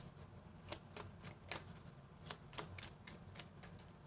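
Tarot cards being shuffled by hand: a string of irregular, sharp card clicks and flicks.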